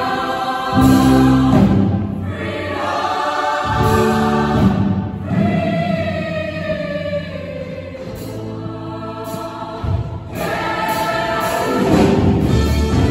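Show choir singing a number in harmony with instrumental accompaniment, many voices holding and sliding between long notes.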